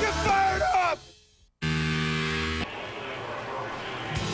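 Television broadcast music with yelling voices that cuts off about a second in; after a short gap, a steady held synthesized chord sounds for about a second as a graphics sting, then drops to a quieter hiss.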